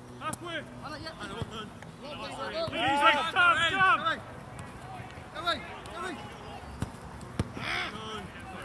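Footballers shouting to each other on an open grass pitch, with a loud burst of calls about three seconds in, and a few sharp thuds of the football being kicked.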